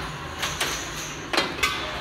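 Antweight combat robots colliding: a run of about five sharp knocks and clanks, the loudest about one and a half seconds in.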